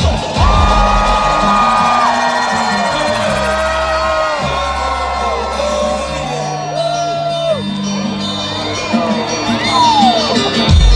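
Live hip hop music through a concert PA, the drums dropped out and heavy sustained bass notes changing in steps, with the crowd cheering and whooping over it.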